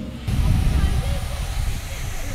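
Gusting wind buffeting the microphone, a loud low rumble with a hiss over it, starting abruptly about a quarter second in.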